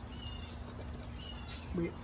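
Faint bird chirps: two short, high, slightly falling notes about a second apart, over a low steady hum.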